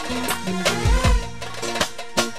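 Live band playing an instrumental stretch of upbeat dance music: regular drum strikes over a bass line and a pitched melody, with no singing.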